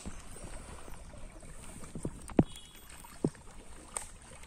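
Water sloshing and splashing around a crowd of mugger crocodiles in a river, over a low rumble. Two short thumps come about two and a half and three and a quarter seconds in; the first is the loudest.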